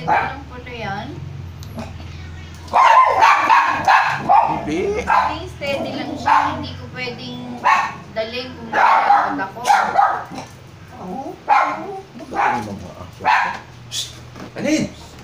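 A dog barking repeatedly in short, loud bursts, starting about three seconds in, with voices behind it.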